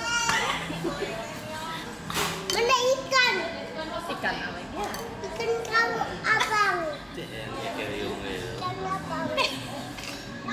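A toddler vocalising: high-pitched babbling and squeals that glide up and down, with no clear words. A couple of sharp clicks come about two and five seconds in.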